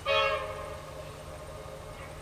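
Horn of the T-class diesel locomotive T411: one short blast of several notes together, loudest for about half a second and tailing off over the next second, sounded as it approaches a level crossing.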